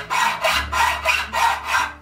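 Hand hacksaw cutting a metal bar held in a vise, making a steady rhythm of rasping back-and-forth strokes.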